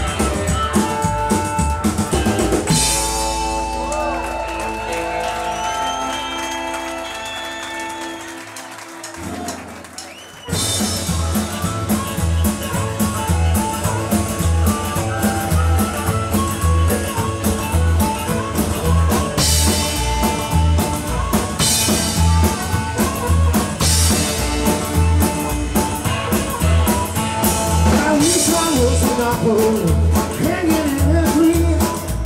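A live rock and roll band with drums, upright bass, guitars and vocals. For the first several seconds a held chord rings and fades away, then about ten seconds in the band kicks in loudly with a driving drum beat.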